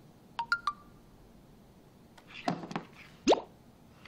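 Phone message notification: three quick pitched plinks about half a second in, then a few light taps and a short rising whoosh near the end.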